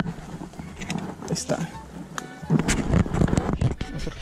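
People's voices talking indistinctly, with a few sharp clicks scattered through.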